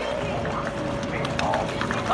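Plastic paddle wheels of small hand-cranked paddle boats churning and splashing the water, with voices in the background.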